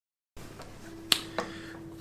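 A hand handling the recording device close to the microphone: a sharp click about a second in, then a softer click a quarter second later, over a faint steady tone.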